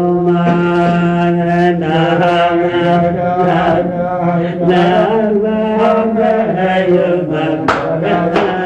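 Male voices chanting a slow, repetitive melody with long held notes over a steady low note; a few sharp hits sound near the end.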